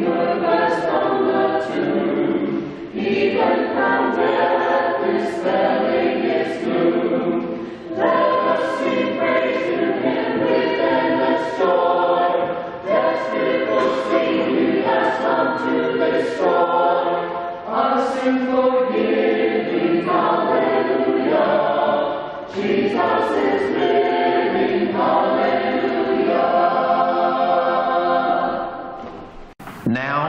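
Church choir singing, in phrases broken by short pauses every four to five seconds, and fading out shortly before the end.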